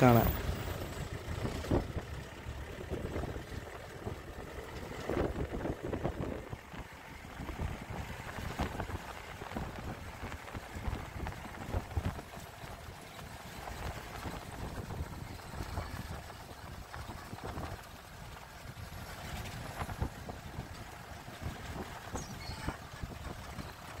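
Safari jeep on the move, heard from inside its open cabin: a steady low engine-and-road noise with frequent irregular knocks and rattles.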